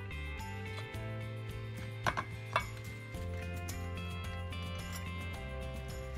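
Background music with held chords throughout. About two seconds in come two sharp clinks of a metal fork against a stainless steel mixing bowl.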